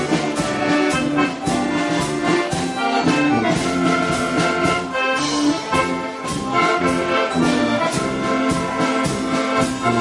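Chemnitzer concertina playing a polka tune, reedy chords and melody over a steady beat of about two strokes a second.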